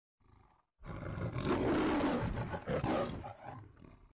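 Recorded lion roar from the VivaVideo app's MGM-style intro logo. It begins about a second in, swells twice and dies away near the end.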